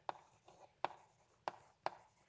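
Chalk writing on a blackboard: a few sharp taps as the chalk strikes the board, with faint scratching between them.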